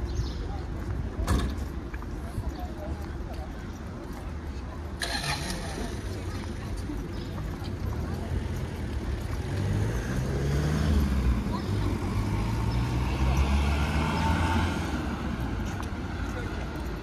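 City street ambience: road traffic running under indistinct voices of passersby, with a sharp knock about a second in. The sound grows louder in the second half.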